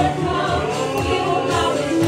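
Live gospel worship music: many voices singing together over a band of keyboard and drums.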